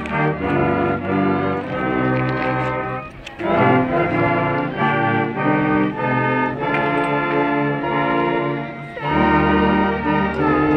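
Brass band playing a tune in held chords, with a short break about three seconds in.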